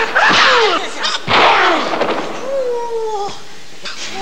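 Sharp bangs at the start and about a second in, each trailed by a swoop falling in pitch, then a held, slightly wavering tone in the second half.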